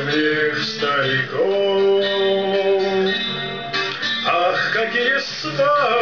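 A man singing a slow Russian bard song to his own strummed acoustic guitar, holding one long note through the middle.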